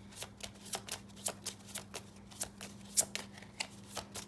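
A deck of zodiac oracle cards being shuffled by hand: a run of short, crisp card flicks at about four a second.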